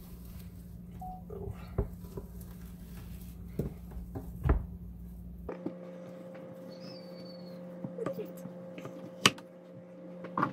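A large kitchen knife cutting raw pork on a wooden cutting board, the blade knocking on the board now and then, with one sharp knock near the end. A steady low hum runs underneath.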